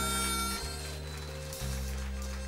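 Electric blues band playing a slow passage. Held low notes change about every second, and a held high note dies away about half a second in.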